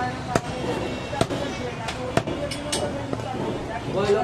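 Butcher's blade chopping on a wooden tree-stump block, giving about six sharp, irregularly spaced knocks, the loudest in the first half, with voices around.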